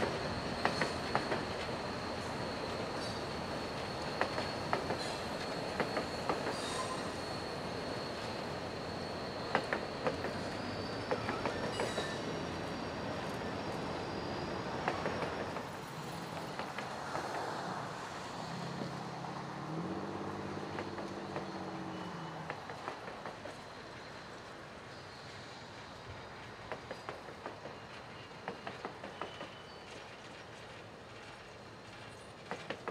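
Slow-moving passenger train of EMD F40PH-2 locomotives and coaches on curved track, its wheels giving a steady high-pitched squeal through the first half that rises slightly in pitch partway through. Its wheels click over the rail joints. The train sound gradually fades toward the end as the train pulls in for a stop.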